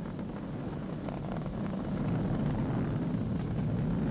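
Falcon 9 first stage's nine Merlin 1D rocket engines heard as a steady, deep rumble with faint crackle, growing slightly louder.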